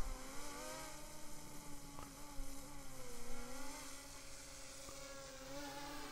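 DJI Mini 3 Pro drone's propellers buzzing as it descends, a faint steady hum whose pitch drifts slowly up and down.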